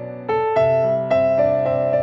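Instrumental music on a keyboard with a piano-like sound: slow melody notes and chords. After a short dip at the start, a new note is struck every half second or so, each ringing on.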